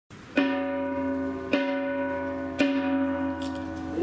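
A small metal Buddhist ritual bell struck three times with a mallet, about once a second, each stroke ringing on with several steady tones.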